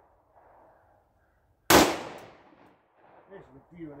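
A single 9mm pistol shot from a PSA Dagger compact, a Glock 19 clone, firing Sierra 115-grain jacketed hollow points, a little under two seconds in, with a short echo trailing off.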